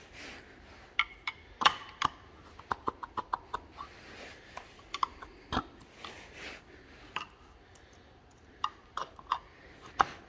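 Sharp clicks and taps of a flat-blade screwdriver prying a plastic cover up off its studs on a Caterpillar RD-4 engine. The taps come irregularly, with a quick run of about five around three seconds in.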